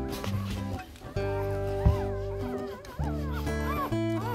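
Strummed acoustic guitar music with steady held chords, and thin high squeaks from newborn puppies over it.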